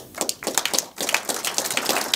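Audience applauding, the clapping starting suddenly and quickly filling in to a dense patter.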